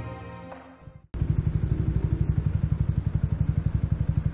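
Background music fading out, then after a sudden cut about a second in, a Yamaha motorcycle engine idling with a steady, even pulse.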